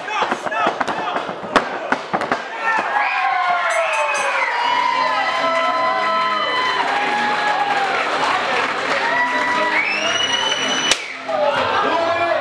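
Wrestling crowd in a hall shouting and cheering, with long rising and falling calls through the middle. A sharp thud from the ring comes about a second and a half in.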